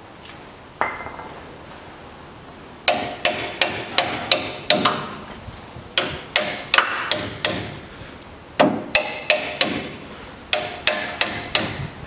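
A hammer striking steel: a single blow, then quick bursts of four to six ringing blows, on a front suspension arm bolt seized by rust in the bushing's inner sleeve.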